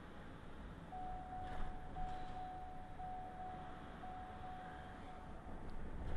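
Road and engine noise inside a slowly driving car, with a steady single-pitched electronic beep starting about a second in that pulses about once a second.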